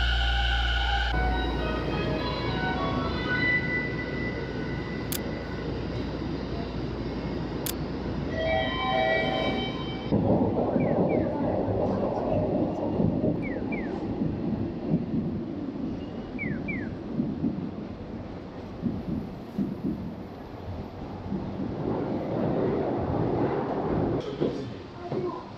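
Subway station ambience with a train: a steady rush of running noise with held electronic tones and two sharp clicks in the first half, then a louder rush with a few brief squeaks, easing near the end.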